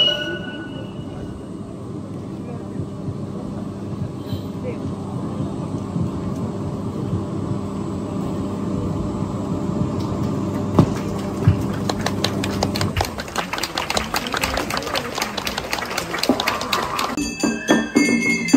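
Crowd murmur over a steady low hum, with a dense run of sharp clicks from about ten seconds in. Near the end a struck metal gong starts ringing as festival percussion begins.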